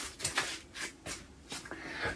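Faint rustling and scraping of packaging being handled at a bicycle's front wheel, in a few short bursts.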